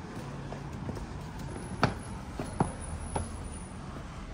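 Footsteps climbing stone steps and crossing cobbled pavement: a few sharp, irregular taps, the two loudest a little under a second apart, over a low steady background noise.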